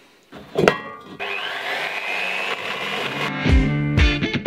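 A knock, then a benchtop metal-cutting bandsaw's motor starting, rising in pitch and running steadily at speed. Background music comes in near the end.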